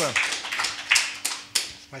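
Audience applauding at the end of a song, the claps thinning out in the second half.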